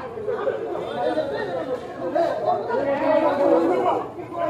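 Several people talking at once, their voices overlapping in a heated exchange.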